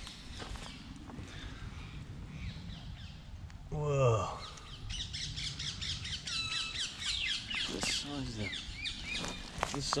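Wild birds chirping and calling, with a busy run of short high calls from about five seconds in, over a low steady rumble of wind or mic handling. A man's drawn-out, falling exclamation breaks in about four seconds in, and a softer one near eight seconds.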